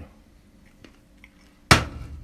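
Quiet room with a faint click about a second in, then a single sharp knock near the end that rings briefly.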